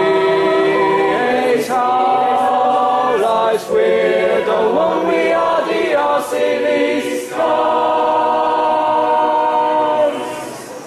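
Mixed-voice (SATB) choir singing sustained chords of the hall song, ending on a long chord held for about two and a half seconds that is cut off cleanly.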